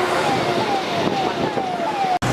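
Emergency-vehicle siren sounding a quick falling tone, repeated about two and a half times a second, over a rough background of wind and distant voices.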